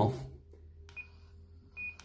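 Two short, high key beeps from an Icom ID-52 handheld transceiver as its buttons are pressed, one about a second in and one near the end.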